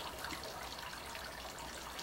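Steady, even background hiss of room tone with no distinct events.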